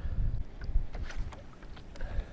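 Low wind rumble on the microphone out on open water, with a few faint clicks from a spinning reel as it is readied and swung into a cast.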